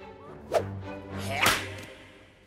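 Cartoon penguin flippers swishing and slapping together in a high five: a sharp smack about half a second in, then a louder whoosh ending in a slap about one and a half seconds in.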